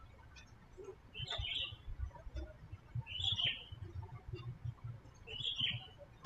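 A bird chirping three times, about two seconds apart, each call a short high chirp, over a faint low rumble with a few soft clicks.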